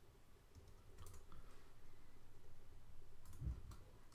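A few faint clicks of a computer mouse and keyboard, around a second in and again late on.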